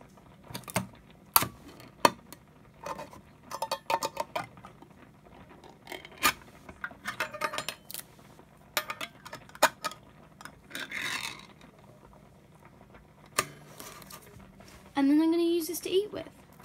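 A metal fork clicking and scraping against the ring pull and lid of a ring-pull tin can as it is levered up, in a series of sharp clicks. About eleven seconds in comes a longer scraping tear as the lid is peeled back.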